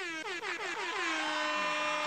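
A DJ sound-effect sting: a cluster of synth-like tones that starts suddenly and swoops down in pitch together, then holds as a steady chord.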